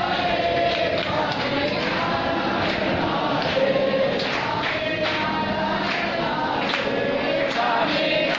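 A group of voices singing an aarti hymn together, with percussive strikes keeping a fairly even beat.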